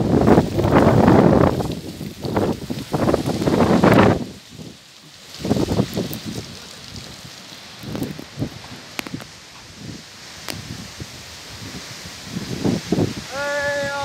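Strong wind in a dust storm buffeting the microphone, with heavy gusts over the first four seconds, then lighter gusts and rustling. Near the end comes a short high-pitched call.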